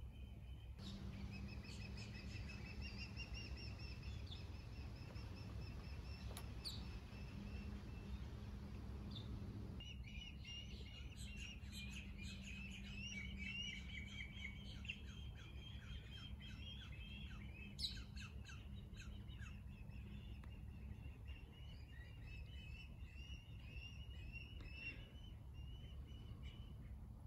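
Outdoor birdsong: a steady high trilling call for the first several seconds, then, from about ten seconds in, rapid chirping from several birds at once, over a low steady hum. A single sharp click sounds about eighteen seconds in.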